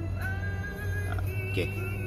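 Music playing from an Eclipse AVN770HD MKII car head unit through the car's factory speakers: a steady bass note under held, slightly wavering high melody tones.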